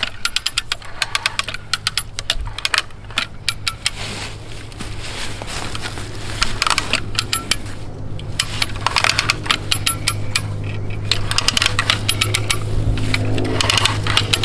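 Hand lever come-along being cranked under heavy load, its ratchet pawl clicking in quick bursts with each stroke of the handle as it tightens a rope. A steady low hum runs underneath.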